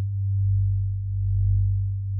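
Low steady synthesized sine-tone drone, swelling and fading in loudness about once a second, as a hypnosis soundtrack bed.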